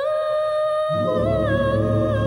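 A cappella gospel choir singing: a woman's voice holds one long high note. About a second in, the lower voices of the choir come in underneath it.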